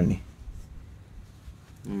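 A pause in a conversation between men's voices: faint room noise with light rustling. A man's voice starts again near the end on a drawn-out vowel.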